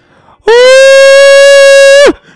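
A man singing one loud, steady falsetto note close into a microphone, starting about half a second in and held to the end. With the limiter switched off the voice drives the recording to full scale, so the note clips and comes out rough with distortion.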